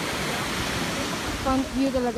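Steady rush of surf breaking on a beach, with wind; a voice comes in near the end.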